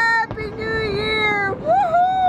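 A person's high-pitched, drawn-out voice holding wavering "ooh"-like tones, one long sound, then a short break about one and a half seconds in, then another.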